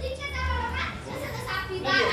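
Indistinct voices of people talking in a room, with no clear words, over a steady low rumble.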